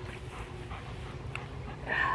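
Golden retriever panting close to the microphone, with a short whine at the very end.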